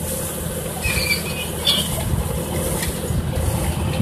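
Tractor-drawn drip-tape laying rig running steadily, its tape reels turning, with a couple of brief high squeaks between one and two seconds in.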